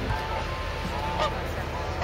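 Geese honking a few short calls over a steady background rush of outdoor noise.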